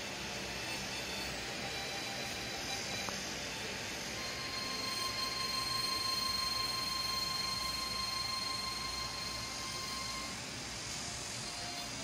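Steady rushing background noise that swells a little in the middle, with a faint high steady whine through much of it.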